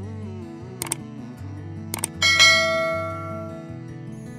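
Sound effect for a subscribe-button animation over steady background music: two short mouse clicks about one and two seconds in, then a bright bell ding, the loudest sound, ringing out and fading over about a second and a half.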